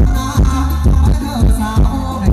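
Live band playing Thai ramwong dance music: a heavy bass drum beat about two and a half times a second under a wavering melody line.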